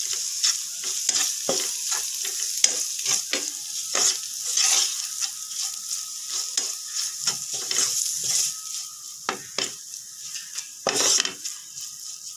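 Onions, green chillies and ground spices sizzling in hot oil in a non-stick pan while a wooden spatula stirs and scrapes them, in quick repeated strokes against the pan. The sizzle eases off in the last few seconds.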